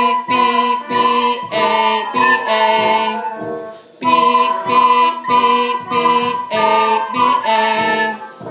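A class of children playing soprano recorders together in unison, alternating the notes B and A in short repeated notes about two a second. The playing pauses briefly a little before halfway, then goes on.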